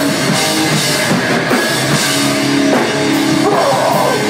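Live hardcore/metal band playing loud: distorted electric guitar, bass guitar and drum kit in an instrumental stretch without vocals, with held chords in the middle.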